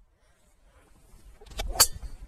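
Golf driver striking a teed ball: one sharp crack near the end, the loudest sound, just after a short rush of the swing.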